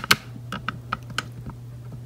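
A few short, light clicks, about six spread over two seconds, over a steady low hum.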